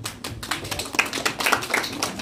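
Audience applause: many people clapping, the claps dense and irregular.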